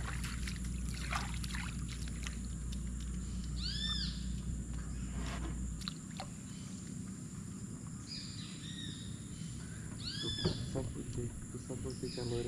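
An animal calling with short, arched, whistle-like notes: one about four seconds in and a couple more near the end, over a faint outdoor background. A low steady hum runs underneath and stops about halfway through.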